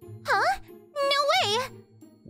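A high voice exclaiming "Huh? No way...?" in two short, sweeping rising-and-falling calls, over light background music.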